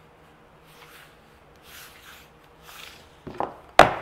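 Hands pressing and rubbing double-sided tape onto the edge of a vinyl banner, giving a few soft swishes. Near the end come several sharp knocks on the table as a hand roller is picked up and put to the banner.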